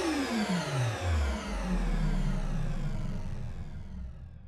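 Logo sting sound effect: after a hit, a sweep slides steeply down in pitch in the first second and settles into a low rumble that fades away.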